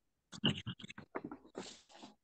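A man's voice in short, broken-up fragments, with a brief hiss near the end.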